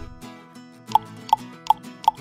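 Three short cartoon 'plop' pop sound effects, one after another about a third of a second apart, starting about a second in, as quiz answer options pop onto the screen. Soft background music plays underneath.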